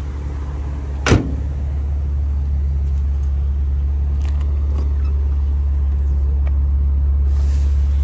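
BMW Z4 passenger door shut with a single solid thump about a second in, over a steady low hum. There is a brief rustle near the end.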